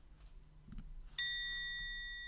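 A single bright bell chime struck about a second in, ringing on with several clear high tones and slowly fading, marking the change from one segment to the next.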